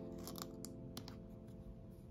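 Crinkling and clicking of a small plastic-and-foil blister pack piece being handled and pressed onto paper, with a few sharp crackles in the first second, over soft background music holding a chord.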